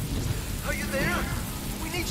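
Steady rain with a low rumble of thunder, with brief faint warbling voice-like sounds about a second in.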